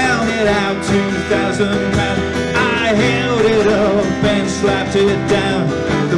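Folk band playing live: strummed acoustic guitars, a mandolin-family instrument and a cajon, with a man singing lead.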